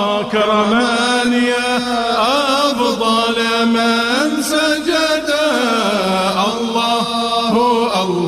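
Male voice chanting an Arabic devotional hymn, drawing out long held notes that waver and bend in pitch.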